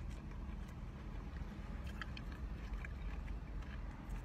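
Steady low hum inside a car's cabin, with a few faint soft clicks of chewing and handling food.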